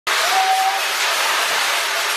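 Fire extinguisher discharging, a loud steady hiss as the white cloud sprays out.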